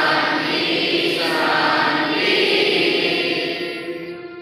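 A large group of students singing a prayer together in unison, with long held notes, trailing off near the end.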